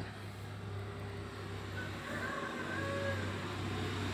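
Steady low hum under an even background hiss, with a few faint brief tones a little past the middle.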